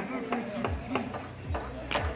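Indistinct talking of people in the background, with a few short knocks and low thuds.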